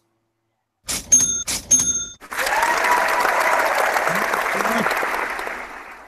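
A short ringing ding with a few clicks, then crowd applause lasting about three and a half seconds that fades out near the end: a game-show sound effect marking a correct quiz answer.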